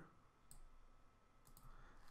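Near silence: room tone with a few faint computer mouse clicks.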